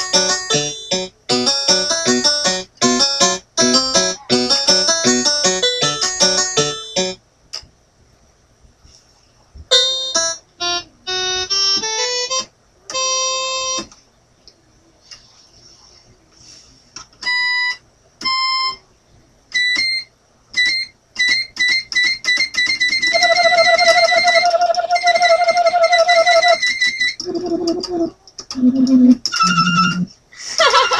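Portable electronic keyboard being played: about seven seconds of quick notes, then after a pause short runs and separate single notes. Its voice is changed from the panel buttons partway through, and near the end comes a long held note with a wobbling pitch, followed by a few low notes.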